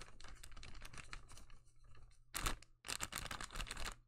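Faint irregular rustling and clicking of paper-bag puppets being handled, with a louder cluster of rustles about two and a half seconds in, over a low steady hum.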